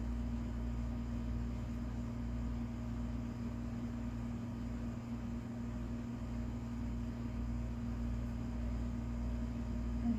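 A steady low hum with one constant tone and an even hiss, unchanging throughout.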